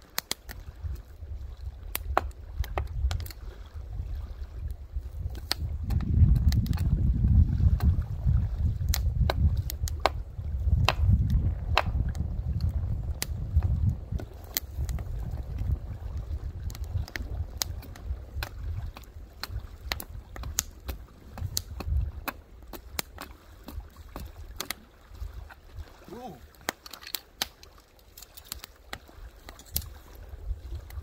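Kindling being split off a block of wood by hand: irregular sharp taps and cracks of the blade in the wood throughout. Wind rumbles on the microphone, strongest in the first half.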